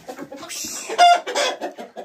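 Domestic chickens clucking in short, irregular calls, with one short loud squawk about a second in.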